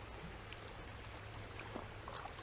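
Creek water running over shallow rocky riffles: a faint, steady rushing noise with a low hum underneath.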